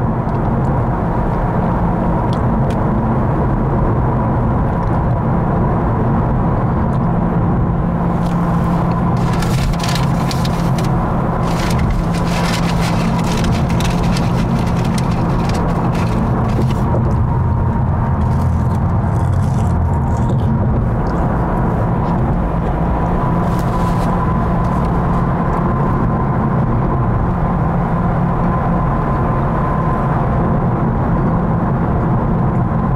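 Steady road and engine rumble inside a car cruising on a highway, with a faint steady whine. For several seconds around the middle, a run of short sharp clicks or rattles sounds over it.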